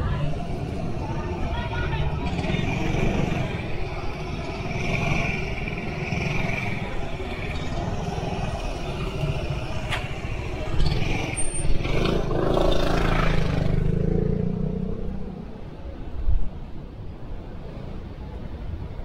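City street traffic ambience of passing cars and motor scooters, with a motor scooter passing close by about twelve seconds in, its engine getting louder for a couple of seconds before fading. A short knock sounds near the end.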